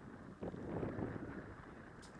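Wind buffeting the microphone, a low irregular rumble that swells about half a second in.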